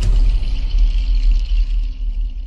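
A TV channel ident's sound effect: a deep, sustained rumble with a hissing shimmer above it, the hiss thinning out near the end.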